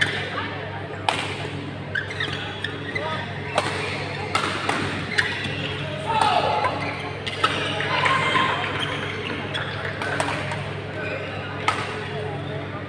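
Badminton rackets striking a shuttlecock in a doubles rally: a string of sharp hits roughly one a second, ringing slightly in a large hall, over a steady low hum.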